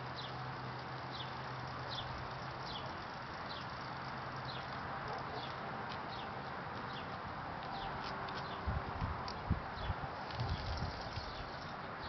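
A bird calling with short, high, falling chirps about once a second over a steady outdoor hiss, with a few low thumps in the last few seconds.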